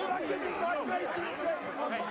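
Several men's voices talking over one another at once, a jumbled commotion of overlapping shouts and chatter during a shoving scuffle.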